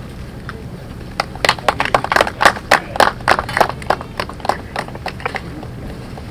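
Scattered applause from a small group of people clapping, starting about a second in and dying away near the end, over a steady low rumble.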